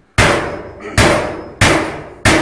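Three loud metal clanks about two-thirds of a second apart, each ringing briefly as it dies away: blows struck on a small metal box while its door is being worked off.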